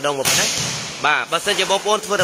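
A volleyball spiked hard: one sharp slap of hand on ball about a quarter second in, trailing off in the hall's echo for most of a second.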